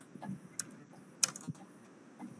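A few scattered clicks of computer keyboard keys, the loudest a little past halfway.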